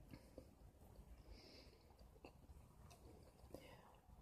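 Near silence with faint, scattered soft mouth clicks of someone chewing a bite of a meat-free chicken tender.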